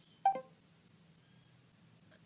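A short electronic blip of two quick notes, the second lower, from the Samsung Android phone's voice-input prompt as it stops listening and starts processing the spoken command.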